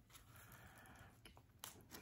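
Near silence with faint handling of a mailed package being opened by hand: soft rustling of the packaging, with a few light clicks near the end.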